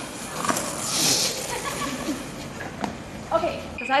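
Several people talking in the background, with a few light knocks. Clearer speech starts near the end.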